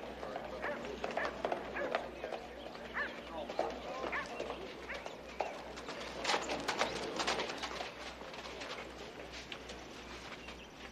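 Horses' hooves clopping and shuffling on a dirt street, mixed with the indistinct voices of a crowd.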